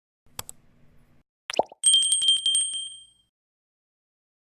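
Subscribe-button animation sound effect: a faint mouse click, a pop about a second and a half in, then a bright notification-bell ring that trills rapidly and fades out after about a second and a half.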